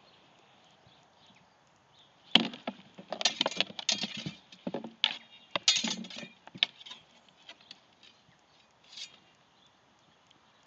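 Sword-and-shield sparring: a rapid flurry of about a dozen sharp knocks and clashes as swords strike shields and each other, a few of the blows ringing briefly, starting about two seconds in and stopping near seven seconds.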